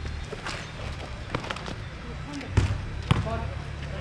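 Basketball bouncing on an outdoor hard court: several dull knocks at uneven intervals, the loudest two about two and a half and three seconds in.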